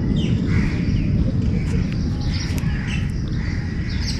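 Birds chirping now and then over a steady low rumble.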